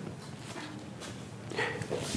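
Low room tone with faint movement, then near the end a whiteboard duster starts rubbing across the board.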